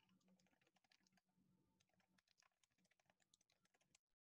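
Faint typing on a computer keyboard: a quick, irregular run of key clicks, over a low steady hum.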